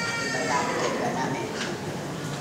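An elderly woman speaking into a handheld microphone: a long drawn-out syllable in the first half second, then ordinary speech.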